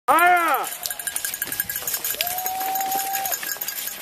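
Spectators shouting cheers at a passing cross-country skier: a short yell that rises and falls in pitch right at the start, then one long held call about two seconds in, with light clicks scattered throughout.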